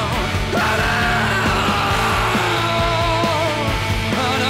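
Hard rock song: a man sings in a strained, near-yelling voice over a band with a steady drum beat, holding one long note about half a second in.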